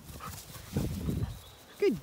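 A German Shepherd dog panting as it runs past close by, loudest in a short burst about a second in.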